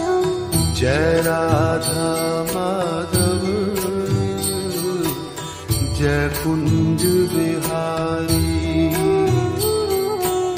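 Hindu devotional bhajan music: a melodic line of gliding, ornamented notes over a steady percussion beat and a low sustained accompaniment.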